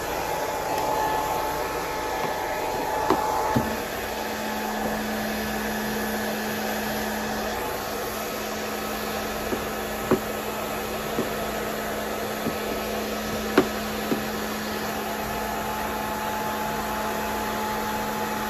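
Hand-held hair dryer running steadily as it blows over a cat's fur, a low hum joining in a few seconds in. A few light knocks now and then.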